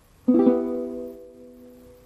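Venezuelan cuatro strummed on an E minor chord about a quarter second in, the open chord then ringing and slowly fading.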